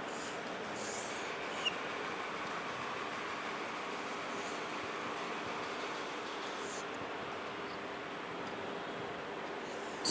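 Marker pen drawing lines on a whiteboard: a few short, faint scratchy strokes and one light tick over a steady background hiss of room noise.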